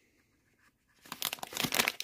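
A clear plastic packaging bag holding a USB cable crinkling in a hand as it is handled, starting about a second in.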